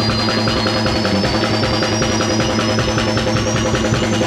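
Live rock band playing loud, the drum kit keeping a steady fast beat, with a high thin tone slowly rising in pitch throughout.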